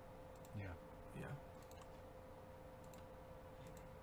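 Near silence over a faint steady hum, with a few faint, sharp clicks of someone working a computer about three seconds in.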